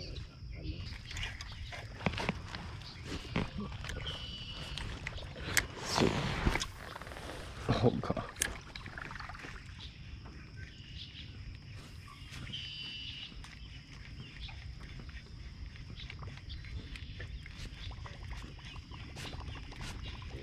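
Scattered knocks and clicks from fishing gear being handled in a canoe, with a couple of louder knocks about six and eight seconds in and a faint steady high tone underneath.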